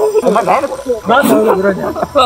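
Speech: people talking, with a brief pause about a second in.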